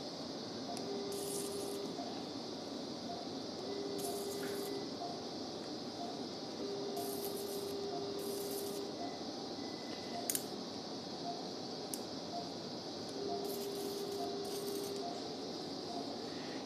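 Electrosurgical unit sounding its steady activation tone in four separate bursts of one to two seconds each, as a monopolar cautery pencil cuts tissue. Most bursts carry a faint high hiss from the cutting. A steady background hiss runs underneath.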